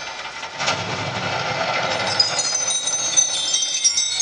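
Projection-mapping show soundtrack over loudspeakers: a rushing, rumbling swell builds, then high bell-like chimes come in about two seconds in, bridging from one scene to the next.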